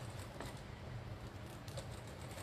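Industrial sewing machine stitching during free-motion quilting: a quiet, fast, even ticking of the needle over a low steady hum.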